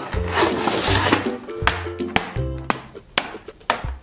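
A cardboard toy box being torn and pulled open: cardboard scraping and rubbing for the first second or so, then a few sharp clicks, over background music.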